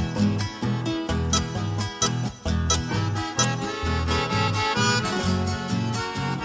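Instrumental passage of Paraguayan folk music: an accordion melody over strummed and plucked guitars, with a steady bass line of about two notes a second.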